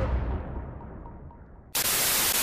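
An edited-in music sting fading out, its treble closing down until only a dull low rumble is left. Near the end a sudden loud burst of TV-static hiss cuts in.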